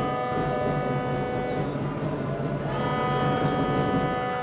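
A horn sounding two long steady blasts, the second starting about a second after the first ends, over the low noise of a basketball arena.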